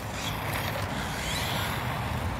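ECX Torment 1/18-scale RC short-course truck driving on asphalt: its small brushed electric motor and gear drivetrain whine faintly over steady tyre noise.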